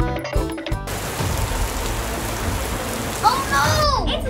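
Rain sound effect: a steady hiss of heavy rainfall that comes in suddenly about a second in, as the children's music cuts off. A child's voice makes short up-and-down exclamations near the end.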